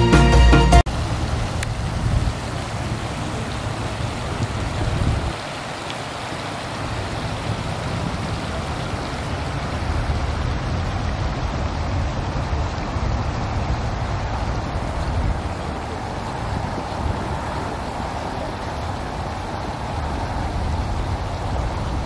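Music cuts off abruptly within the first second, followed by the steady rushing splash of a fountain's water jets falling into a pond.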